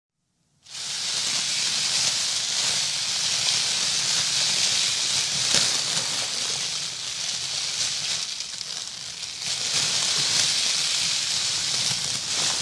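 A spray of water hitting plastic sheeting: a loud, steady hiss that starts suddenly out of silence just under a second in and eases briefly about eight seconds in before picking up again.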